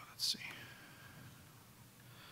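A man briefly says "let's see" under his breath, then quiet room tone.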